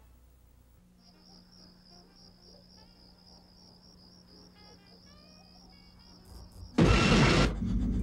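Faint evening insect sound, crickets: a steady, quickly pulsing high chirring with a few scattered small chirps and a low steady hum under it. Near the end a sudden loud burst of noise cuts in and lasts under a second.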